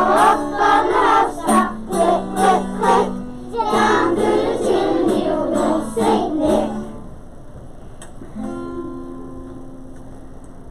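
A group of young children singing a song together over an instrumental accompaniment. The singing stops about seven seconds in, and the accompaniment carries on more quietly with held notes.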